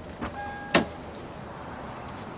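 Car door clicks: a light click, a short electronic beep, then a sharper click as the door is worked, over a steady background hiss.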